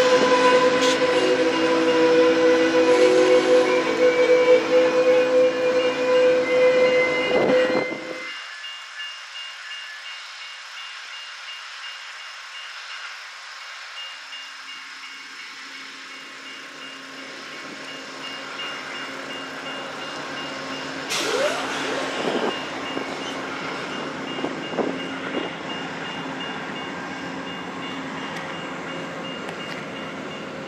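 Amtrak California Zephyr passenger train rolling in and braking, its wheels giving a steady high squeal, for about the first eight seconds. Then the sound drops abruptly to the train standing at the station with a low steady hum, with a sharp click and a few knocks a little past the middle.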